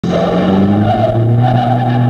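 A loud, steady low-pitched droning tone with overtones, held at one pitch throughout.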